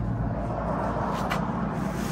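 Plastic bags rustling as they are handled and packed, with a sharp tick a little over a second in, over a steady low rumble.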